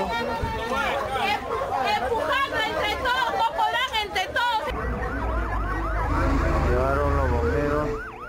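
Several people's raised voices. About five seconds in, an emergency vehicle siren starts, going in quick repeated rising wails over a low engine rumble, with voices still over it.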